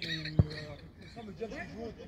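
A football kicked once: a single sharp thud about half a second in, with men's shouting voices around it.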